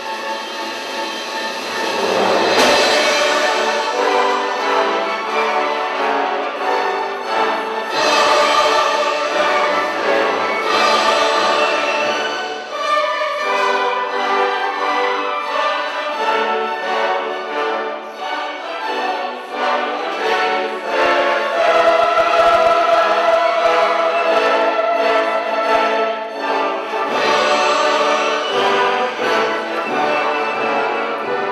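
Symphony orchestra playing a classical choral work with a mixed choir singing.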